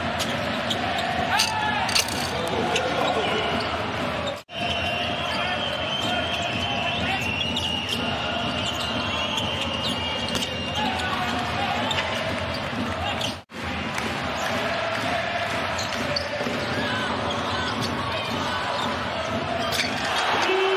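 Basketball game sound in an arena hall: a ball bouncing on the hardwood court with sharp impacts, over steady crowd noise and voices. The sound cuts out abruptly twice, about four and a half seconds in and about thirteen and a half seconds in, where clips are spliced together.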